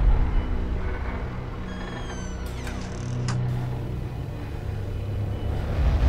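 Low, steady drone of a horror film score, with a few faint high falling tones about two seconds in and a short click just after three seconds.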